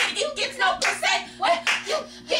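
Hands clapping in a steady rhythm, about three to four claps a second, with a person's voice going along over the claps.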